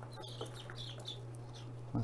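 A few-days-old Rhode Island Red/ISA Brown cross chicks peeping faintly: a scatter of short, high peeps over a low steady hum.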